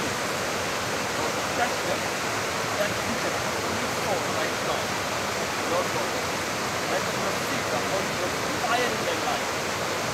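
A steady, even rushing noise, with faint voices murmuring now and then beneath it.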